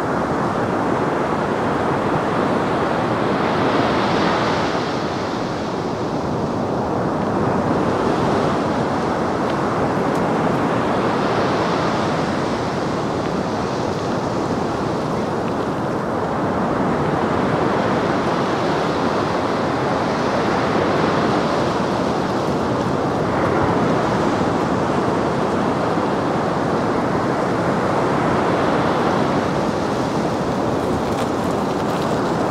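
Rough sea surf: waves breaking and washing up the beach in a continuous rush that swells and eases every few seconds.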